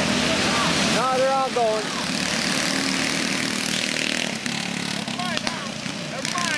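Several go-kart engines running at race speed, a steady loud drone. A person's voice calls out briefly about a second in, and again near the end.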